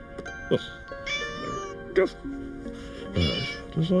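Cartoon kitten mewing once, a high-pitched call lasting under a second, about a second in, over background music.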